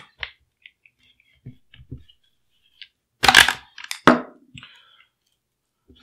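Small clicks and knocks of metal and polymer gun parts being handled: the rear end cap of an HK SP5's receiver is popped off and set down on the bench. Two louder sharp knocks come a little past halfway.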